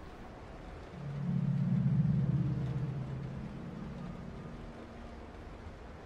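A low droning tone swells up about a second in and slowly fades away over the next few seconds.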